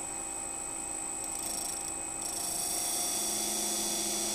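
Sharpening machine's abrasive-paper disc spinning at about 1600 rpm with a steady hum, as the jaw of a pair of manicure nippers is touched lightly against it to form the cutting bevels. The grinding adds a high hiss that comes in about a second in and grows louder about halfway through.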